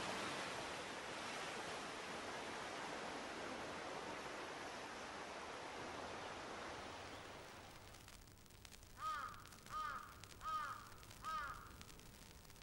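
A steady rush of surf that fades out over the first seven or eight seconds, then a crow cawing four times at even intervals.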